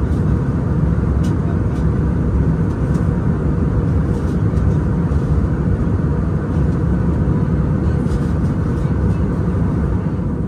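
Steady cabin noise of an Airbus A321 airliner in flight: an unbroken low engine and airflow noise, with a few faint light clicks early on.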